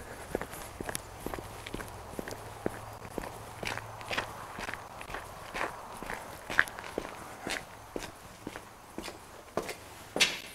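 Footsteps of a man walking at a steady pace, about two steps a second, over grass and a gravel path.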